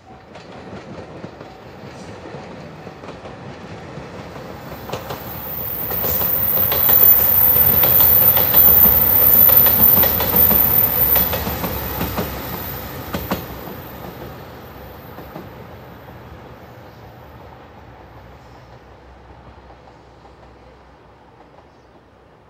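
A three-car JR Shikoku Nanpu limited express diesel train in yellow Anpanman livery passes close by. It builds up, is loudest for several seconds with wheels clacking over rail joints and a thin high whine, then fades away.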